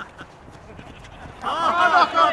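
Excited human voices shouting and laughing, breaking out loudly about one and a half seconds in, with wavering, bending pitch and no clear words.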